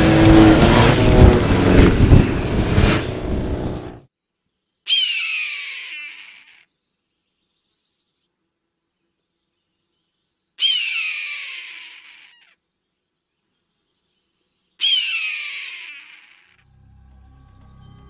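Loud music with engine noise that cuts off about four seconds in, followed by three screams of a bird of prey about five seconds apart, each a high cry falling in pitch and fading with an echo.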